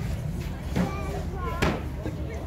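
Indistinct voices talking and exclaiming briefly in the middle, over a steady low rumble, with no music playing.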